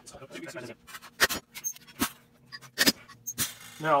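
Four sharp metal clinks as a steel shim punch, its punch pin and a thin sheet of punched metal shim are handled and knocked together.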